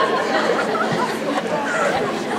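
Audience chatter: many voices talking over one another at once, steady throughout.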